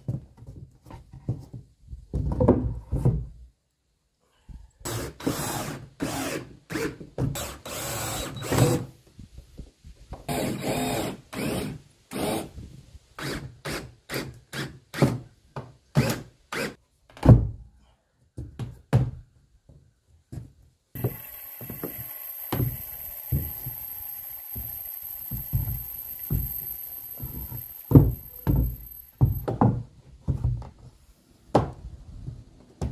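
Wooden floorboards knocked and set down with repeated thunks. In the latter part a cordless drill runs steadily for about eight seconds with a high whine, driving screws into the boards.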